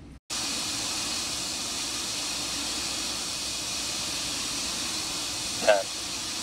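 Steady hiss of gas venting around the Terran 1 rocket's engine section on the launch pad, beginning abruptly just after the start.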